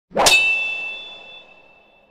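A single metallic clang struck about a quarter second in, its high ringing tone fading away over about two seconds: an intro logo sound effect.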